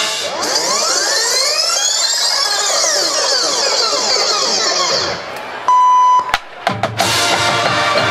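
Electronic sound effects played over the field's speakers: a swirl of many rising and falling synthesized glides that fades out over about five seconds, then a loud steady beep lasting about half a second and a few glitchy clicks. The marching band's brass and drums come back in near the end.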